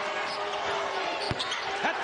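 Basketball dribbled on a hardwood court over steady arena crowd noise, with one sharp thump a little after a second in.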